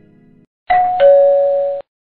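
Doorbell-style ding-dong chime sound effect: a higher note, then a lower note, lasting about a second and loud. Before it, in the first half-second, the tail of a plucked, harp-like jingle fades out.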